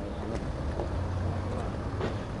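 A steady low rumble, with faint voices of people talking in the background.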